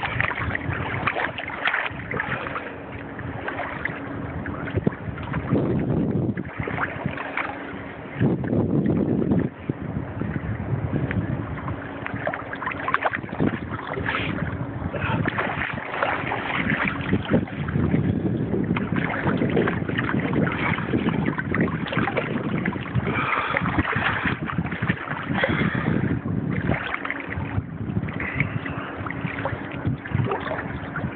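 Choppy sea water sloshing and lapping right at the microphone in uneven surges, with wind buffeting the microphone.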